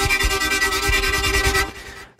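Xfer Serum software synthesizer playing a sustained chord with a quick, even stutter, its oscillator running a wavetable made from an imported picture. The notes stop about 1.7 seconds in, leaving a short fading tail.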